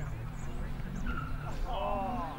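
Distant voices calling out across an open football ground, with a louder drawn-out shout near the end.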